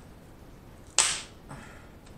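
King crab leg shell cracking as it is bent apart by hand: one sharp, loud snap about a second in, then a smaller crack half a second later.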